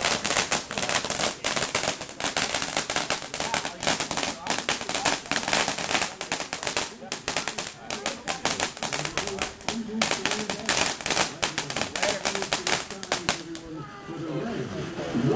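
Ground firework fountain crackling: a fast, dense run of sharp pops and crackles, many each second. It cuts off shortly before the end.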